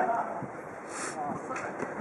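Indistinct shouts and chatter of futsal players, with a short hiss about a second in.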